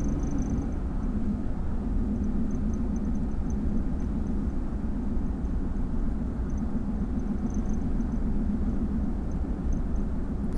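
A vehicle driving on a dirt road, heard from inside the cab: a steady, even rumble of engine and road noise.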